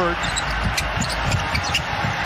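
Basketball dribbled on a hardwood court, several bounces spaced irregularly about half a second apart, over steady arena background noise.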